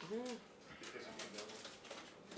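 A person's voice: one short drawn-out word with a rising-then-falling pitch near the start, then a quiet room with only faint scattered sounds.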